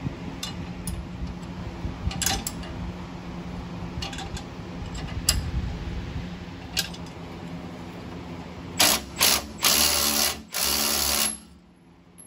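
Power tool spinning the threaded screws of coil-spring compressors to let the clamps off a newly fitted Jeep front coil spring, in four loud bursts near the end, the last two longer. Before that, a few light metallic clicks and knocks of tools on the clamps.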